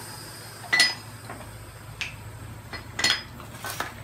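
A few sharp metallic clinks, about a second apart, some with a brief ring, against a faint steady background.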